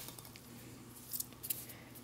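Faint rustling and squeaking of polystyrene packing peanuts as a tin can is lifted out of them, with a few light clicks about a second in.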